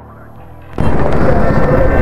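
After a brief quieter moment, a loud, low rumble of roadside traffic and stopped motorcycles sets in about a second in, as a bus passes close by.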